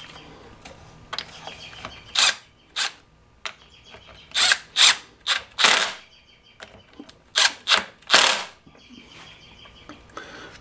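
Cordless impact driver running in short bursts, about ten in all, tightening the carburetor mounting bolts on a chainsaw.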